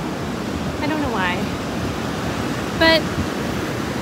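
Ocean surf breaking on the beach, a steady rush, with some wind on the microphone.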